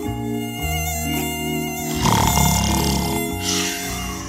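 Background music with a high, wavering mosquito-whine sound effect buzzing over it during the first couple of seconds.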